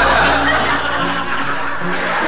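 Laughter over steady background music.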